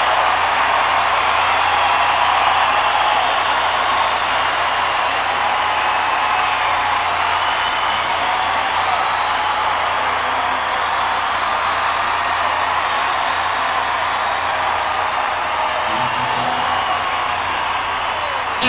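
A large concert audience applauding and cheering between songs: a steady wash of clapping and crowd noise with a few faint whistles and whoops.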